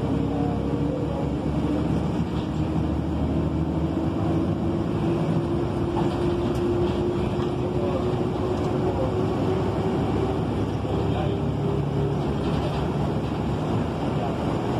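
Interior of a moving city bus: steady engine and road rumble, with a whine that slowly rises in pitch as the bus gathers speed.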